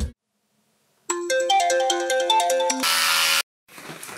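A phone's ringtone-style melody of quick, short notes plays for about a second and a half, then cuts off into a brief burst of hiss.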